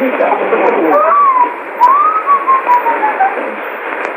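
China Radio International's 13720 kHz shortwave broadcast from a 500 kW transmitter at Xi'an, heard through a Sony ICF-SW77 receiver. A voice rises and falls in pitch, thin and muffled, over a steady hiss of shortwave noise, with a brief gap about a second and a half in.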